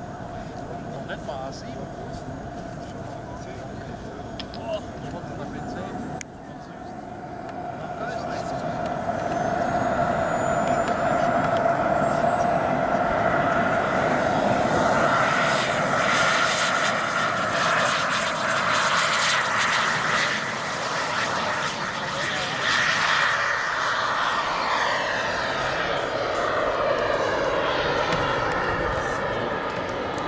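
Turbine of a radio-controlled giant-scale F-15 Eagle model jet, whining steadily at low power, then spooling up with a rising whine into a loud full-power takeoff run. Near the end the jet noise falls in pitch as the model passes and climbs away.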